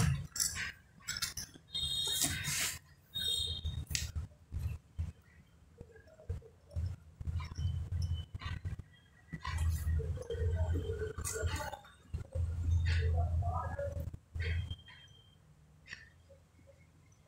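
Handling sounds of cardboard matchboxes and a small plastic glue bottle being worked by hand: scattered clicks and taps, with stretches of low, uneven background sound.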